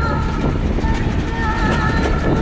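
Bus engine and road rumble heard inside the cabin, a steady low drone while driving, with faint voices above it.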